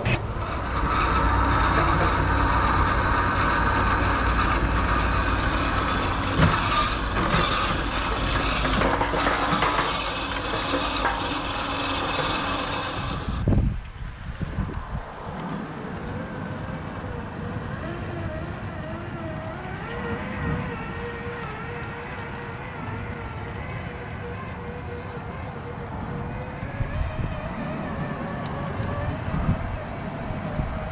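Electric motors and gear drivetrains of 1/10-scale RC crawler trucks whining as they tow trailers, with wheels splashing through a shallow puddle in the louder first half. About halfway through it drops to a quieter, wavering whine that rises and falls with the throttle as a truck crawls up a dirt bank.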